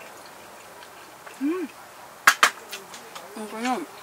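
Stainless steel camping pot set down on a wooden table: two sharp metallic clinks in quick succession a little over two seconds in. Short 'mm' hums from someone chewing a mouthful come before and after.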